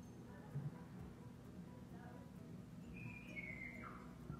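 A dog gives one brief, thin high whine about three seconds in, falling in pitch. Faint background music plays throughout.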